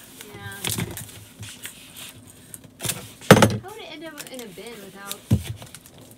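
Handheld packing-tape gun worked on a cardboard mailer: a short rip and sharp snap of tape, the loudest sound a little past halfway, with another knock near the end. Faint voices come between them.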